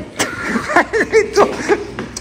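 Low steady rumble of a running vehicle engine, with short indistinct voice sounds over it.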